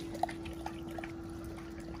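Great Dane lapping water from a swimming pool: soft, faint laps over a trickle of water and a steady low hum.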